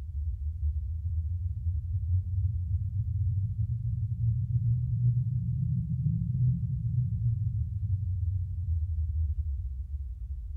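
A low, muffled rumble with nothing in the higher range, swelling through the middle and easing off near the end.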